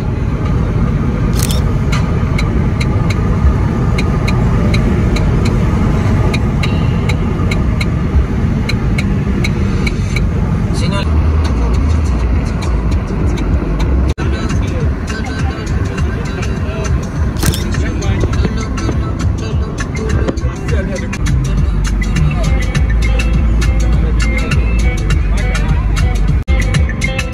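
Car driving along a road, heard from inside the cabin: a steady low rumble of engine, tyres and wind, with music with a steady beat playing over it.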